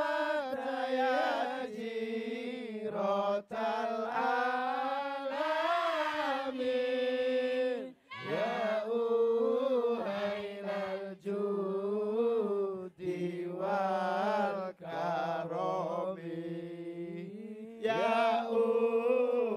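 A man singing a sholawat-style devotional melody unaccompanied into a microphone, in long drawn-out, wavering notes with short breaths between phrases.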